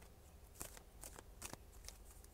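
Faint, short snaps of a deck of cards being shuffled or drawn, about five light clicks spread over two seconds.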